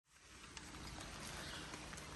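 Faint, steady rushing of outdoor background noise, with a couple of light clicks.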